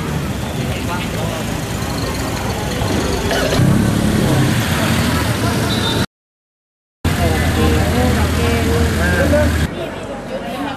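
Car engines running as a line of cars drives slowly past, with people talking over them. The sound drops out for about a second around six seconds in, then a car engine idles close by with men's voices, and the engine sound stops just before the end.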